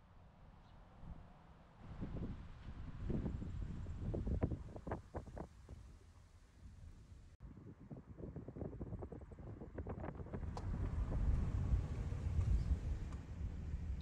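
Outdoor wind buffeting the microphone: a low rumble that swells and falls in gusts, quiet overall, with a brief dropout about seven seconds in.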